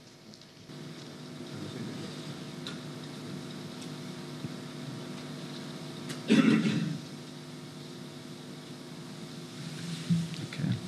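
Steady low room hum with several fixed tones, broken once about six seconds in by a short, loud sound lasting about half a second.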